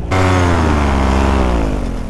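Paramotor engine throttled back, its pitch falling steadily and the sound fading over about two seconds as it drops toward idle for the descent.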